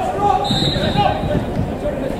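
Pitch-side sound of a football match: players' shouts and calls over thuds of the ball being played, with a brief high whistle about half a second in.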